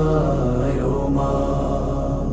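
A voice singing a slow Bengali lament, drawing out the words "O ma" ("O mother"), over a steady low drone.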